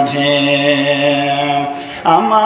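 A man's voice chanting in the melodic sing-song style of a Bengali waz sermon, holding one long steady note with no instruments, which breaks off near the end.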